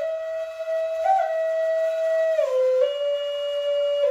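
Music: a single wind instrument playing a slow melody of long held notes that step up and down in pitch, with one brief higher note about a second in.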